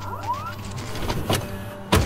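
Edited transition sound effects over a steady dark music drone: a short rising whine near the start, then a few sharp hits, the loudest just before the end.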